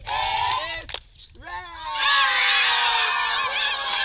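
A group of young children singing together in high voices: a short phrase, a brief pause about a second in, then a long held phrase sung by many voices at once, its pitch sinking slowly.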